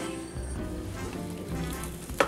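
Soft background music with a low bass line, over a faint sizzle of sausage cooking in a hot Farberware electric waffle maker as batter is spooned in.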